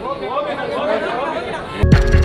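A man speaking, cut off about two seconds in by the abrupt start of electronic music with a heavy, regular bass beat.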